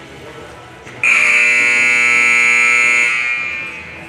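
Arena time buzzer sounding once: a loud steady electric buzz that starts about a second in, holds for about two seconds, then fades out. It marks the end of the cutting run's time.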